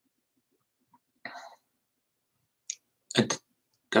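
A single short, soft cough from a man about a second in, in a quiet room; speech starts again near the end.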